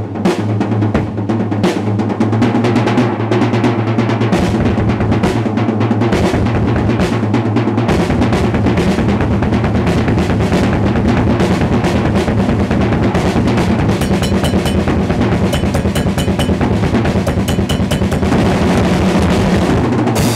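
Acoustic drum kit played in a fast, dense solo, with rapid snare and tom strokes over the bass drum. From about eight seconds in, the bass drum strokes come thicker and more continuous.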